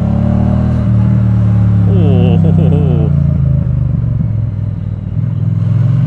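Triumph Bonneville T100's parallel-twin engine running under way at steady low revs, heard from the rider's seat. The engine eases off briefly about four to five seconds in.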